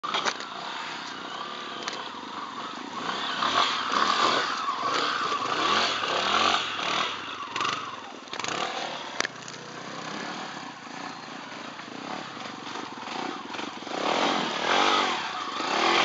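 Off-road motorcycle engine revving up and down unevenly as the bike climbs a slippery trail, louder in surges near the start and again near the end.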